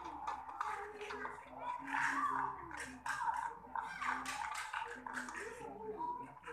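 Indistinct voices talking, mixed with scattered short clicks and clatter.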